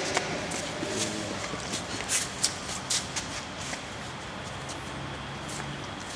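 Steady background room noise with rustling and shuffling, broken by scattered light clicks and knocks, most of them in the first few seconds.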